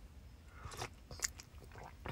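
Faint mouth noises from a close-miked speaker between phrases: a couple of small mouth clicks about a second apart.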